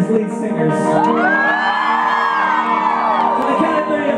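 Live rock band holding a sustained chord on electric guitars. About a second in, a concert-goer close by gives a long whoop that rises and then falls in pitch.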